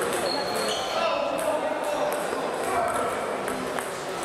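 Table tennis ball clicking off paddles and the table in a rally, ringing in a large hall, over indistinct voices.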